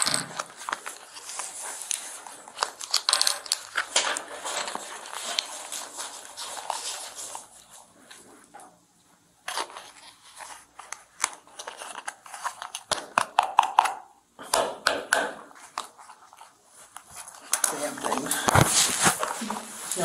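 Crinkling and rustling of plastic and paper packaging being opened and handled close up: a gunshot-residue swab kit being unwrapped. It comes in bursts of crackles with short pauses.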